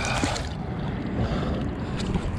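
Water splashing and dripping as a large snook is hauled out of the water by hand, with a brief splash in the first half-second over a steady low rumble of water and wind.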